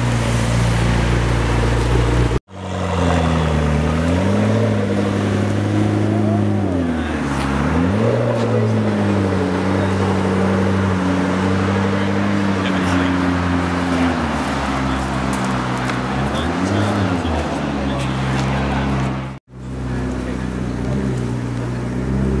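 A car engine idling steadily, its pitch dipping briefly and recovering a few times. The sound cuts out for an instant twice, about two seconds in and near the end.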